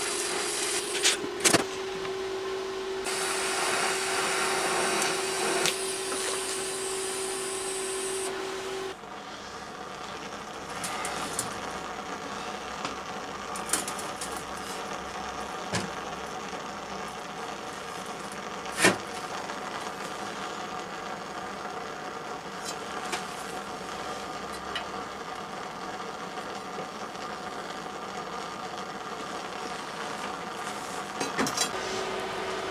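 TIG welding arc giving a steady buzzing hum with hiss for about the first nine seconds, then cutting off abruptly. After that, quieter workshop background with occasional light clicks and knocks of steel parts being handled.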